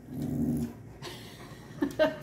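A dog grumbling: a low, growl-like moan about half a second long near the start, then a short, sharper sound near the end. It is the dog's talking-back 'complaining' noise, not a threat growl.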